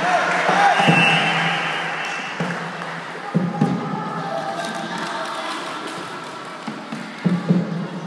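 Children's voices calling and shouting during a volleyball game, with a volleyball struck in two quick pairs of hits, about three and a half seconds in and again near the end.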